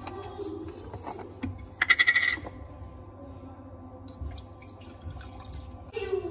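Almond milk poured from a carton into a stainless steel milk-frother jug, one short pour about two seconds in.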